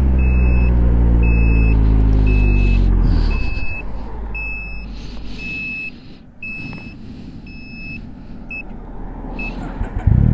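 Can-Am Ryker 900's three-cylinder engine winding down to a stop over about three seconds after its kill switch is bumped by accident, while a high beep repeats about every 0.7 s. After the engine stops, tyre and wind noise as the bike coasts without power.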